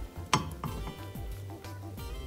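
A spatula knocks once sharply against a metal saucepan, followed by a few faint taps and scrapes, over quiet background music.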